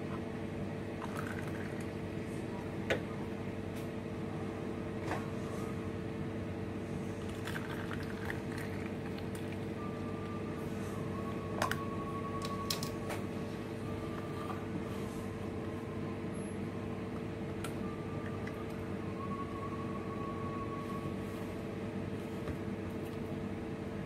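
Steady mechanical hum, with a few light clicks and knocks as plastic popsicle molds and their stick lids are handled and pressed into place.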